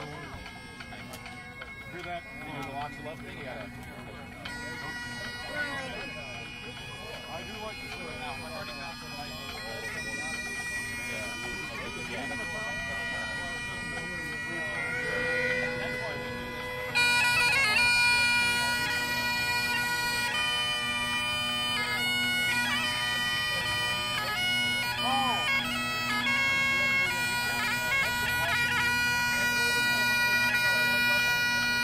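Great Highland bagpipe: the drones sound a steady low chord, then about halfway through the chanter comes in much louder, moving between notes over the drones.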